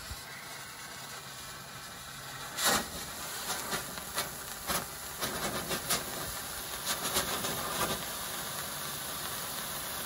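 Fireworks lances and their black-match fuse igniting: a steady hiss of burning composition, broken from about two and a half seconds in by a run of sharp pops and sputters as the lances catch, the first one the loudest.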